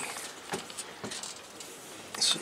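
Faint rustling and a few small clicks of handling as a hand reaches in behind a metal solar-panel rack.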